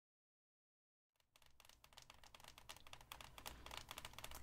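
Long fingernails tapping rapidly on the cover of a hardcover book, starting about a second in and growing louder.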